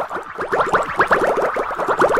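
A cartoon-style editing sound effect: a fast run of short rising bloops, about eight a second.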